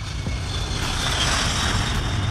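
Jet engines of a Kawasaki C-2 transport aircraft at takeoff power during the takeoff roll: a loud, steady rumble with a high hiss and a faint whine, growing louder about a second in.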